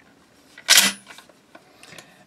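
A Mossberg Maverick 88 12-gauge pump action closing with a single loud metallic clack about two thirds of a second in, as the fore-end is run forward and the bolt closes on a shell in the chamber, followed by a lighter click.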